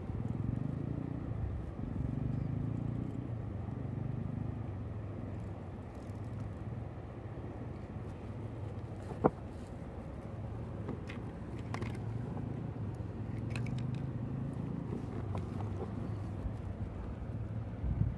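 Steady low rumbling background noise with a few faint clicks and one sharper click about nine seconds in.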